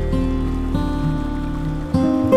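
Solo acoustic guitar playing a slow instrumental, plucked notes ringing on, with new notes coming in near the start and about three-quarters of a second in.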